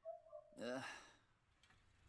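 A weary sigh, "ugh", voiced and breathy with a falling pitch, faint, after a short steady tone at the very start.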